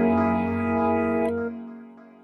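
Music: a held chord of several notes that begins to die away about a second and a half in.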